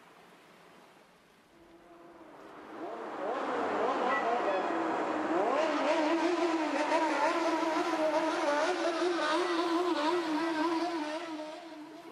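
Several motorcycle engines revving, a bōsōzoku biker gang sound effect. They fade in about two seconds in, give a few rising revs, then hold a wavering drone.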